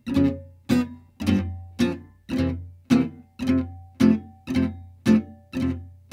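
Oval-hole gypsy jazz guitar playing la pompe rhythm on a slow tune, about two chord strums a second. It is played slow and soft, but each pompe stroke is still fast and crisp.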